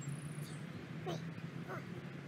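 Two brief animal calls, about a second in and again near the end, over a steady low hum.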